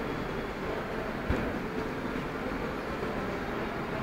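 Steady background din of a large indoor exhibition hall, with a single short knock just over a second in.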